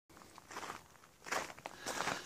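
A few soft footsteps, the first about half a second in, with more in the second half.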